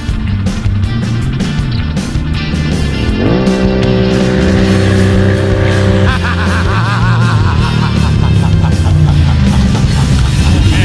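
Can-Am ATV engine running through a loud aftermarket exhaust pipe as the quad is ridden hard. The pitch climbs sharply about three seconds in and holds high, then wavers up and down as the throttle is worked.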